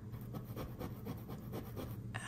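Paintbrush working acrylic paint on a canvas in a quick run of short, scratchy dabbing strokes, over a low steady hum.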